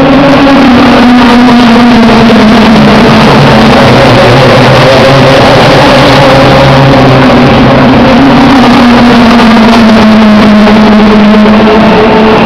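Loud, continuous racing-car engine noise, a steady drone that rises and falls slowly in pitch over several seconds.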